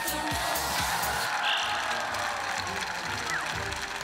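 Studio audience applauding, with the dance music stopping about a second in.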